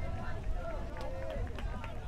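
Players' voices calling out on the field, unclear and well back from the microphone, over a steady low rumble of wind on the microphone, with a few faint clicks.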